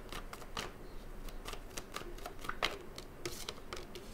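A deck of tarot cards being shuffled by hand: a run of irregular short card clicks and flicks.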